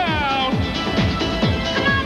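Up-tempo dance music with a steady kick drum at about two and a half beats a second. In the first half second a high sliding sound falls in pitch over the beat.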